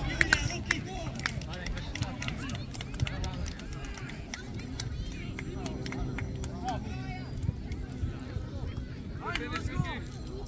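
Soccer players' distant shouts and calls across an open field, heard in short bursts near the start, around seven seconds and near the end, over a steady low rumble with scattered faint clicks. A faint steady hum comes in around the middle.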